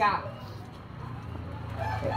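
A rooster crowing faintly in the background, over a steady low hum.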